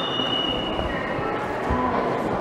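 Indoor ambience of a large, busy exhibition hall: a steady wash of distant voices and footsteps, with a faint steady high tone during the first second and a half.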